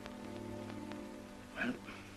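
Orchestral film score holding soft sustained string notes, over the faint clicks and crackle of an old optical soundtrack. Near the end comes a brief, louder vocal sound, like a short gasp or breath.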